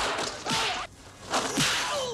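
Martial-arts film fight sounds: several fast swishing whooshes of a swung weapon, mixed with short shouted cries.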